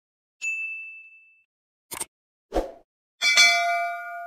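Subscribe-button and notification-bell sound effects. A single high ding rings out about half a second in, then two mouse clicks, then a fuller bell chime with several tones near the end that keeps ringing.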